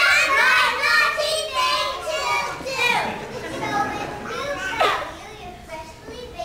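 Young children's voices speaking and calling out on stage, busiest in the first two seconds, then two falling calls later on.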